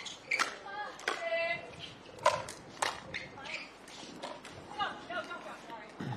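Pickleball paddles hitting a plastic ball in a rally: a string of sharp pops about a second apart, the loudest a little past two seconds in. Faint voices sound behind them.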